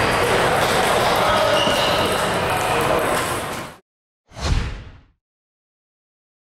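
Table tennis hall ambience: many voices talking and celluloid-type balls clicking off tables and paddles, with hall echo. It cuts off about four seconds in, and half a second later a short whoosh with a deep boom sounds.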